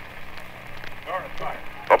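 Steady hiss-like background noise of an old 1964 radio game broadcast during a pause in the play-by-play, with a faint, brief voice about a second in.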